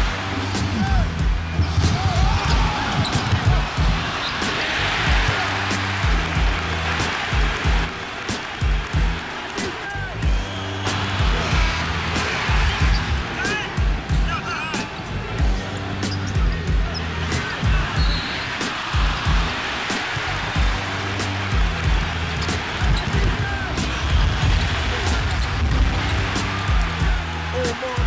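Background music with a steady beat and a repeating bass line, mixed with the sounds of a basketball game: balls bouncing on a court, with voices underneath.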